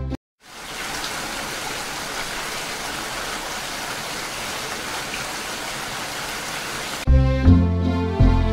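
Steady rain falling, an even hiss of drops on water. Music cuts in about a second before the end.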